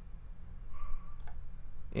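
A few sharp clicks of a computer mouse over a low steady hum.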